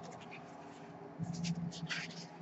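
Large folded paper art prints rustling and sliding as they are handled, in a cluster of short scratchy strokes starting a little past a second in.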